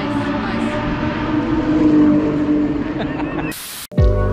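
A steady engine drone holds one pitch under background voices. Near the end a short whoosh cuts it off, and the sound drops out briefly.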